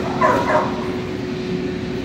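A dog gives one short, high-pitched whine about a quarter of a second in.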